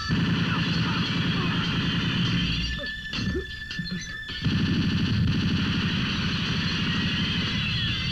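Film sound effects of sustained automatic gunfire with glass shattering, in two long bursts with a short broken pause a little before the middle, cutting off abruptly at the end.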